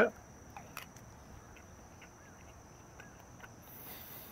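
Quiet pause filled with faint chewing of a crispy fried sea slater, a few soft clicks. Under it, a steady high-pitched insect drone.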